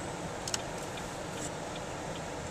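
A car's turn signal stalk clicked on about half a second in, then the indicator ticking steadily, about two to three ticks a second, over the steady road noise inside the car.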